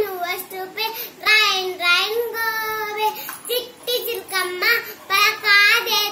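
A young girl singing a rhyme solo, with no accompaniment, in a high child's voice. She holds one long drawn-out note from just over a second in until about three seconds in.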